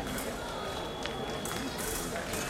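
Fencers' footsteps on the piste as they shift on guard, heard over distant voices in a large sports hall.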